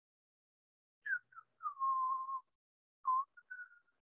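A person whistling a few idle notes: a couple of short falling notes, then a held note of under a second, then a few short higher notes near the end.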